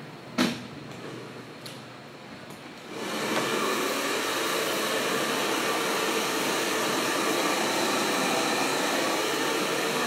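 A sharp knock about half a second in. About three seconds in, a hand-held hair dryer switches on and then runs steadily, blow-drying wet, freshly cut hair.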